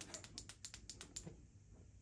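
Small pocket torch's push switch clicked rapidly over and over, stopping a little over a second in. The torch fails to light because its batteries have been taken out.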